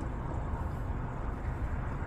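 Steady low rumble of a small fishing boat's motor running at idle.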